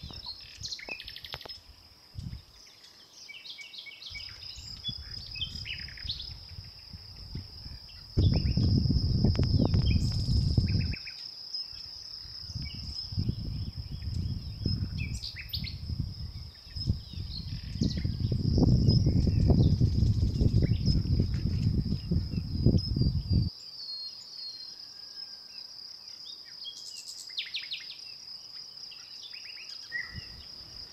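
Countryside ambience: a steady high insect trill runs throughout, with small birds chirping and calling now and then. Two stretches of loud low rumbling noise, about a third of the way in and again past halfway, stand over it.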